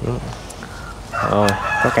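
A rooster crowing in the background, starting about a second in, with a man talking over it.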